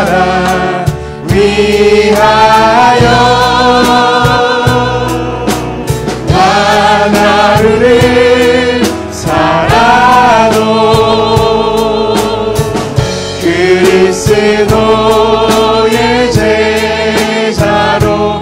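A worship team of mixed men's and women's voices singing a Korean praise song together into microphones, with instrumental accompaniment. Several long notes are held with vibrato.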